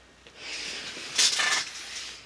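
Rustling and handling noise as the recording camera is picked up and moved against bedding, loudest for a moment just past halfway.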